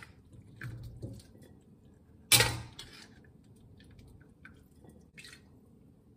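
Kitchen handling sounds as cooked greens are moved from a wok into a glass dish: one sharp clatter about two seconds in, with lighter knocks and clicks before and after it.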